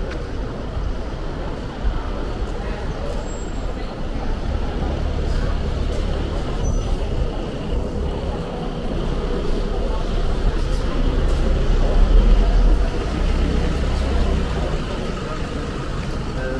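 City street ambience: a steady low traffic rumble that swells, is loudest about twelve seconds in, then eases, under the murmur of passers-by's voices.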